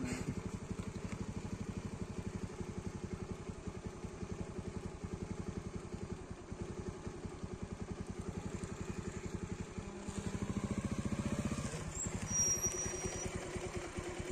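A vehicle's engine idling steadily, running louder for a couple of seconds about ten seconds in. A short, high, thin tone sounds near the end.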